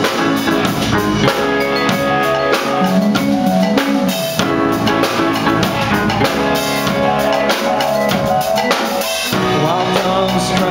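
A live rock band playing an instrumental passage without vocals: electric guitars over a Drumtek drum kit keeping a steady beat.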